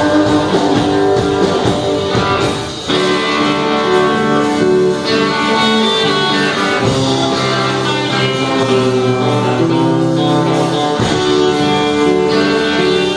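Live rock band playing an instrumental passage on electric guitar, electric bass and drum kit, with a brief drop about three seconds in before the band comes back in.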